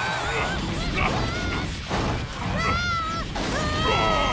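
Animated action sound effects: several short, high-pitched wavering cries and a longer one near the end, over a constant low rumble.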